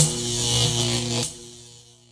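Electric buzz-and-crackle sound effect of an animated logo sting: a steady low electrical buzz with hiss over it. It drops away about a second and a quarter in and fades out by the end.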